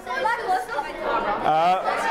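Several voices talking over one another in a room: a group of young people chattering.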